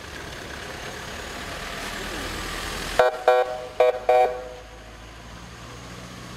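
Vehicle horn sounding four short toots about three seconds in, over the rising noise of a vehicle driving close past; a low steady engine hum follows.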